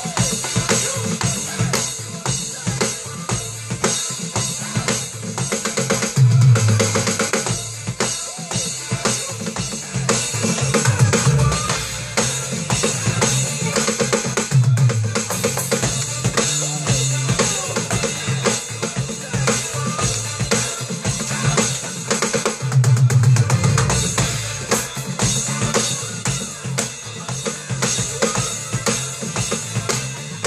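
Roland V-Drums electronic drum kit played in a busy funk groove, with kick, snare, toms and cymbals, over a backing recording of a funk-pop song with a pulsing bass line.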